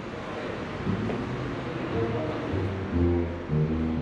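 Live music from a band's soundcheck: several held notes, joined by low bass notes in the second half.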